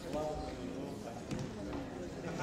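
Indistinct chatter of many voices in a large debating chamber while a vote is being counted, with a single knock a little past halfway.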